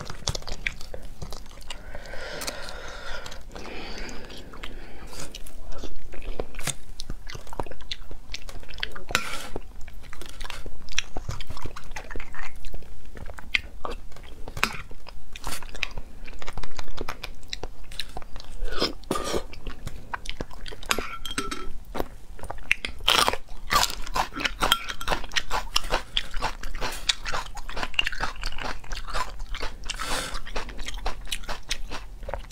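Close-miked mouth sounds of a person eating braised bone marrow: wet chewing, lip-smacking and biting, heard as many short, irregular clicks.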